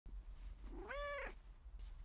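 A domestic cat meowing once, a short call that rises and then falls in pitch, about a second in.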